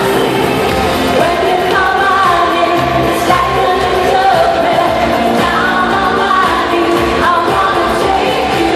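Live pop music with a lead vocal singing over the band, loud and steady, heard from the audience in a large arena.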